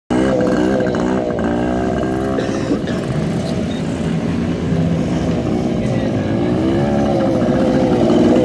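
Small motorcycle engines revving, their pitch rising and falling again and again during stunt riding.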